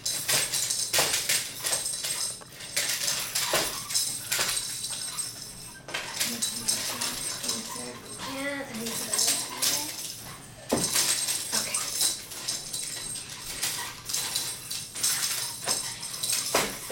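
Plastic baby toy rattling and clattering on a high-chair tray in repeated short bursts as an infant handles it, with a baby's brief vocal sounds about eight seconds in.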